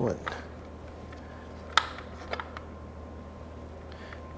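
A single sharp click about halfway through, followed by a couple of faint ticks, as the opened speedometer's metal drive-gear housing is handled, over a steady low hum.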